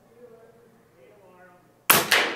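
A single shot from an Air Venturi Avenge-X .25-calibre PCP air rifle near the end: a sharp, sudden crack that rings briefly as it fades.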